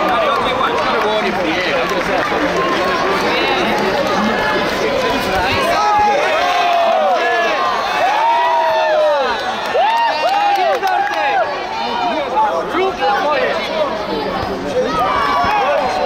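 Tournament crowd: many voices talking and shouting at once, with a run of loud shouted calls in the middle.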